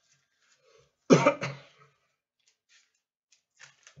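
A man coughing once, a short loud burst about a second in, followed by a few faint clicks.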